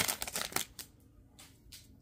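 Foil wrapper of a 2024-25 Upper Deck MVP Hockey card pack crinkling and tearing as it is ripped open, loudest in the first half second, followed by a few faint rustles of the cards being slid out.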